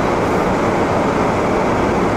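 Steady engine and road noise inside a car's cabin as it is driven.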